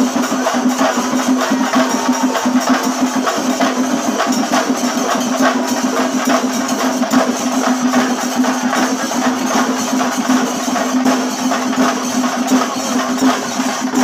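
Singari melam ensemble playing: chenda drums beaten in a fast, continuous rhythm with ilathalam cymbals, loud and steady throughout.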